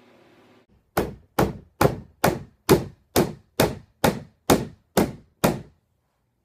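Eleven sharp, evenly spaced knocks, about two a second, starting about a second in, each ringing briefly before the next.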